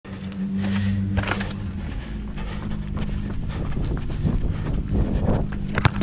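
Footsteps and scuffs on a paved court, with scattered knocks and a sharp knock near the end, over a steady low hum.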